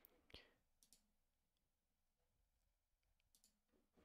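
Near silence, with a few faint, short clicks. The loudest comes about a third of a second in.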